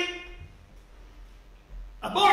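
A pause in a man's preaching: his last word fades out in the room's echo, then only faint room noise.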